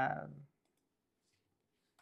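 A few faint, scattered clicks from a computer keyboard as a file path is entered.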